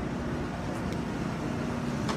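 A steady motor hum over a low rumble, one unchanging tone, like an engine running nearby.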